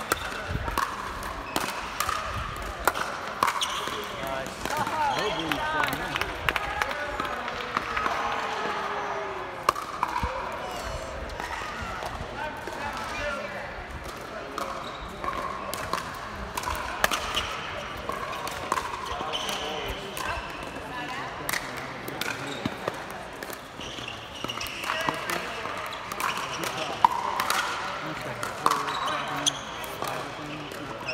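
Pickleball paddles hitting plastic pickleballs: sharp pops repeating through the rallies. People talk throughout in the background.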